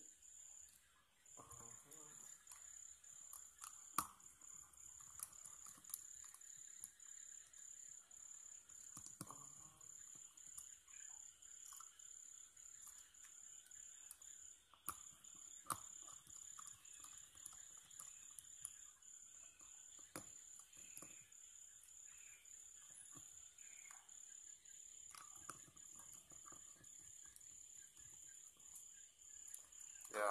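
Near silence: scattered faint clicks of a small star (Phillips) screwdriver turning out the tiny case screws of a DZ09 smartwatch, over a steady thin high whine.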